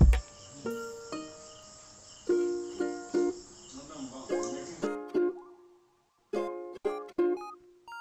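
Background music: a light melody of plucked notes, each ringing and fading, that drops out briefly about six seconds in. A short low thump sounds at the very start.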